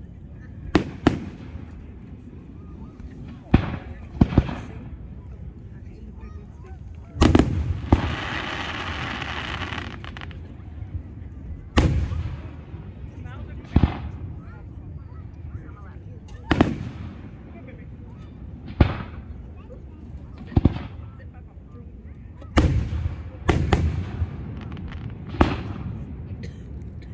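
Fireworks display: aerial shells bursting in sharp, loud booms every one to three seconds, about fifteen in all, each trailing off in a short echo. About a third of the way in there is a steady hiss lasting about three seconds.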